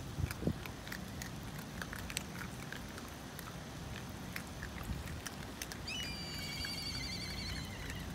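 A group of raccoon dogs chewing and crunching hard food pellets, many short, irregular clicks. About three-quarters of the way in, a high, warbling call starts and holds for about two seconds.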